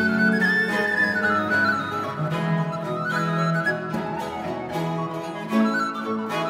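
Instrumental early Scottish music from a small period ensemble: a wooden recorder carries the melody over a baroque violin, with a plucked cittern and low bowed strings underneath.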